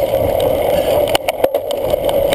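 Wind rushing over the microphone of a bicycle-mounted camera as a cyclocross bike rides over bumpy grass, with a few sharp knocks and rattles from the bike on the rough ground in the second half.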